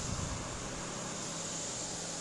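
Steady hiss and low hum from the police camera's recording, with a brief low rumble in the first half second, most likely the microphone being moved as the view swings around.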